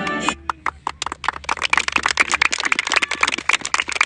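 A group of children clapping: many quick, uneven handclaps in a steady patter. A sung anthem cuts off just before the clapping starts, about a third of a second in.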